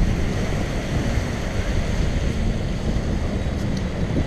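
Steady wind blowing across the microphone over small waves washing onto a sandy beach.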